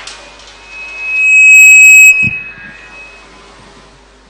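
Microphone feedback through the public-address system: a single high-pitched whistle builds up under a second in, holds very loud for about a second, then drops off sharply, followed by a short low thump.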